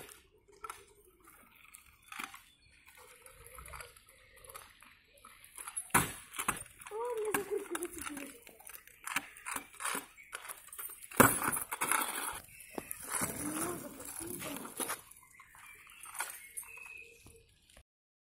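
Stunt scooter clattering on asphalt as it is ridden and turned, with scattered sharp clacks from the deck and wheels. The loudest clack comes about 11 seconds in, and another about 6 seconds in.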